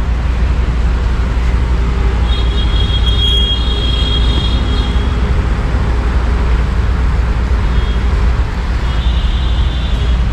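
Steady city traffic noise with a strong low rumble. A thin high-pitched tone sounds for a few seconds about two seconds in, and again near the end.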